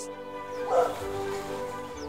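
A hound yelping once, about three-quarters of a second in, over steady background music.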